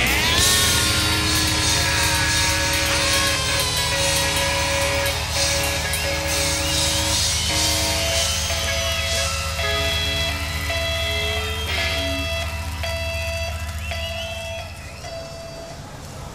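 Live rock band's instrumental outro: sustained electric guitar tones and feedback over a steady low bass drone, with a short high note repeating about twice a second in the second half. It all fades away near the end.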